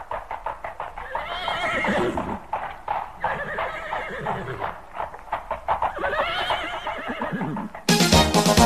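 Horse whinnying three times over a steady clip-clop of hooves, a recorded sound effect opening the song's backing track. Music comes in right at the end.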